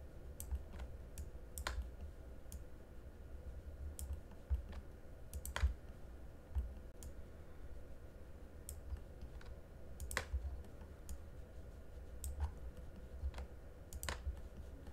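Faint, irregular clicks of a computer mouse and keyboard, a dozen or so scattered across the time with a few louder ones, over a faint low rumble.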